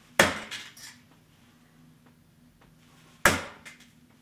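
Two darts striking a coin-operated electronic soft-tip dartboard covered with a sheet of baking paper, about three seconds apart: each hit is a sharp crack of the tip punching through the paper into the board, followed by a few smaller clicks as it settles.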